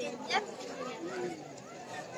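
Indistinct background chatter of several people's voices, low in level, with one voice briefly louder near the start.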